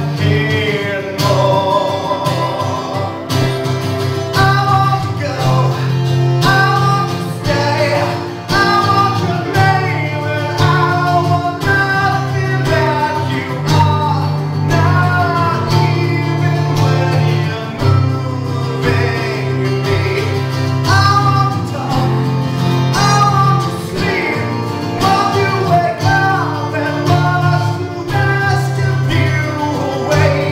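A male singer with acoustic guitar and keyboard accompaniment, performing a song live together.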